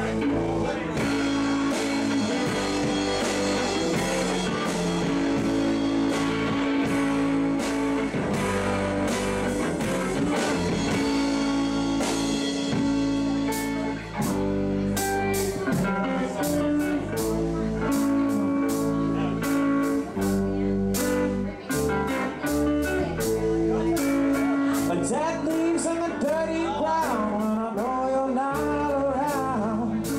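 Live electric band playing an instrumental passage: electric guitar over bass guitar and a drum kit with frequent cymbal hits.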